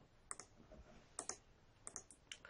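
Several faint, sharp clicks from a computer's controls in three small groups, as the slide is advanced, over near silence.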